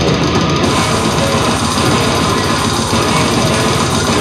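Live extreme metal band playing at full volume: heavily distorted electric guitars over dense drum kit.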